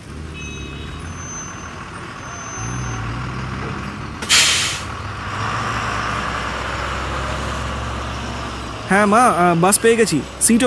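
Bus engine running with a steady low rumble, and a short sharp hiss of air brakes about four seconds in. Near the end a voice calls out in rising and falling tones.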